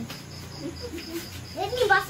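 A high-pitched chirp repeating evenly, about five times a second, with a child's and an adult's voices, faint at first and louder near the end.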